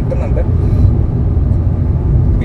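Cabin noise of a Hyundai i20 N Line with its 1.0-litre turbo-petrol engine being driven: a steady low rumble of engine and road noise heard from inside the car.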